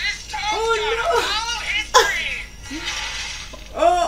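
Voices crying out in surprise over soundtrack music, with a sudden sharp hit about halfway through.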